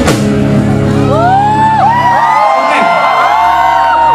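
Live stage music through a loud PA: the drum beat stops at the start and gives way to a held low bass note, while whoops and shouts rise and fall over it.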